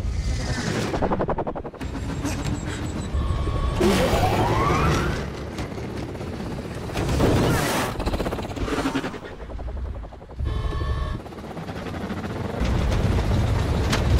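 Action-film sound effects of propeller aircraft in flight: engines and rushing wind, with rapid gunfire. A rising whine comes about four seconds in.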